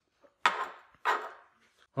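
A machined aluminium mounting block knocking twice against an aluminium gantry plate as it is set down, two short knocks a little over half a second apart.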